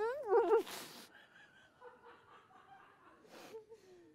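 A woman's muffled, wavering voice with her mouth full, then a sharp rush of breath out through her mouth about half a second in, followed by faint breathy snickering.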